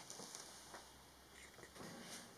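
Near silence: room tone with a few faint clicks and rustles from handling the wooden kit parts.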